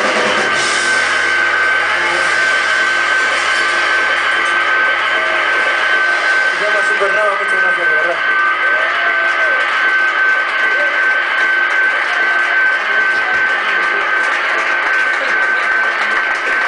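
Live rock band with electric guitars and drums, a steady high tone held throughout; a man's voice sings into the microphone in the middle.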